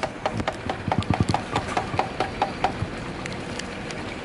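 Scattered hand-clapping from a small group of people, dense for the first two to three seconds and then dying away.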